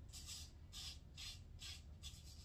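An 8/8 full hollow straight razor scraping through lathered beard stubble in four short, faint strokes, about two a second.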